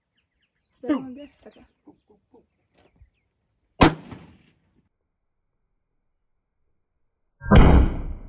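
A scoped bolt-action rifle fired once from a bench bipod near the end: a single loud shot with a tail trailing off over a couple of seconds. A shorter sharp crack sounds about four seconds in.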